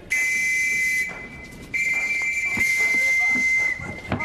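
Police whistle blown in two long shrill blasts, a shorter one and then a longer one of about two seconds that sags slightly in pitch at the end. It is raising the alarm during a chase.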